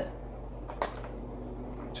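A single short knock a little under a second in, from a plastic measuring cup being handled at a bowl of shredded cheddar, over a steady low room hum.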